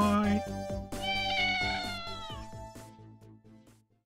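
A cat meows once, a long high call that falls in pitch at the end, over outro music with a steady beat that fades out near the end.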